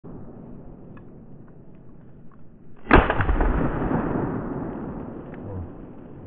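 A single gunshot about three seconds in, with a long rolling echo that fades over about three seconds. Before it, faint rustling with a few light ticks.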